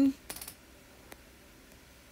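The end of a spoken word, then a quick run of light clicks and one more faint tick about a second in, over quiet room tone.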